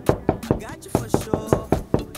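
Knocking on a wooden door: a long, fast run of knocks, about five a second.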